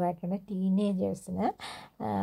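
A woman speaking in short phrases.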